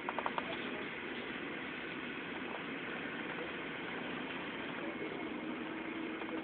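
Steady noise of a moving vehicle heard from inside, with a few quick rattling clicks at the start and a faint steady hum coming in near the end.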